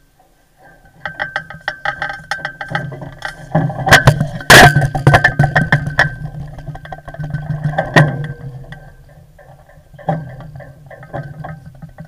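Clattering, clicking and knocking of deck hardware and lines being handled at a sailboat's bow, loudest about four to five seconds in and thinning after about eight seconds, over a low steady hum.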